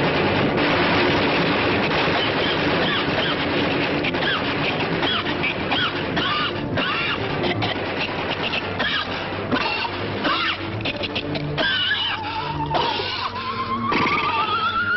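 Cartoon soundtrack of machine-gun fire rattling over a busy orchestral score, with squealing pitch slides. Near the end a slow rising whistle comes in as the gun, overheated because its cooling water was never connected, droops and melts.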